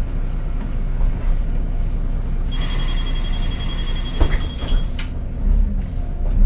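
Low rumble of a Renault Citybus 12M city bus, heard from inside the passenger cabin. About two and a half seconds in, a high electronic warning beep sounds for about two seconds, with a sharp knock during it: the door-closing signal and the doors shutting.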